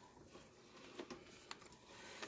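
Near silence: faint room tone with two faint clicks, about a second and a second and a half in.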